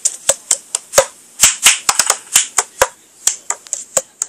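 A rapid run of sharp clicks and taps, several a second at uneven spacing.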